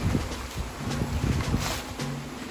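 Wind rumbling on the microphone, with soft low thuds from walking.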